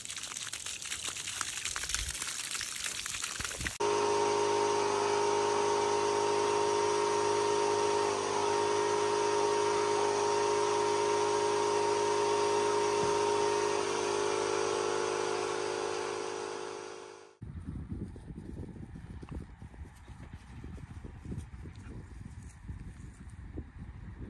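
A garden hose spraying water onto dry grass for the first few seconds. It then switches abruptly to a steady held chord of background music that fades out and cuts off about 17 seconds in, followed by wind noise on the microphone.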